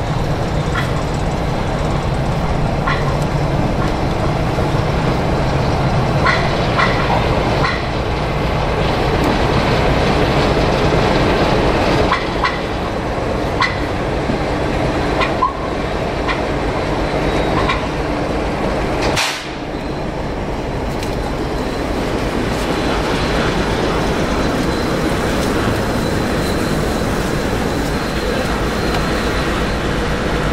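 Class 09 diesel shunter's engine running steadily, with short squeaks and clicks from rolling locomotive wheels and a single sharp knock about two-thirds of the way through.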